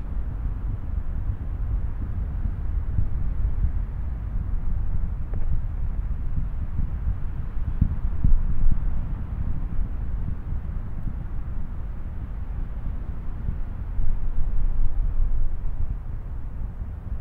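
Steady low rumble of space shuttle Atlantis's ascent during solid rocket booster burnout and separation, swelling briefly about eight seconds in and again near the end.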